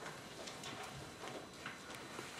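Faint room noise in a quiet hall: scattered light knocks and shuffles, a few a second.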